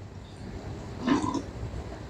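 A man slurping broth from a small soup bowl, once, about a second in.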